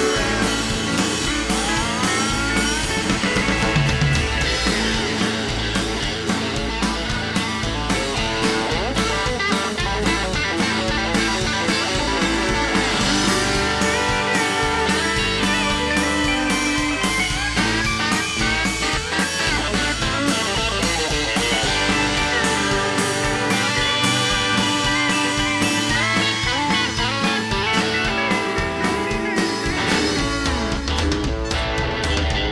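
Live country band playing an instrumental break without singing: a fiddle leads at first, then an electric guitar takes the lead, over bass and drums.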